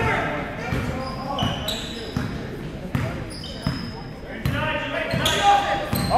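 Basketball game noise in a gymnasium. A ball is bouncing, sneakers give several short, high squeaks on the hardwood floor, and players' and spectators' voices echo through the hall.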